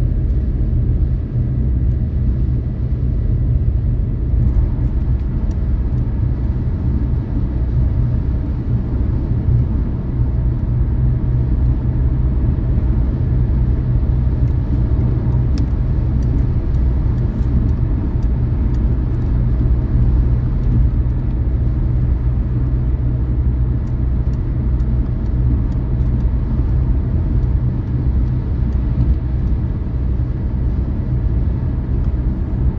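A car cruising at motorway speed, heard from inside the cabin: a steady, low rumble of engine and tyre noise.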